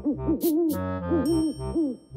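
Owl hooting in a quick run of short rising-and-falling hoots, over soft background music with a bass line.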